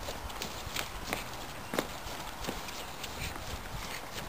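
Irregular footsteps and light thuds from someone dancing on grass, about one or two a second, over a steady outdoor hiss.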